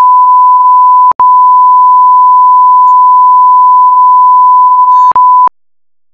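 Steady 1 kHz line-up test tone at full level, the reference tone that runs with colour bars. It is broken by two brief clicking dropouts, about a second in and near the end, then cuts off suddenly.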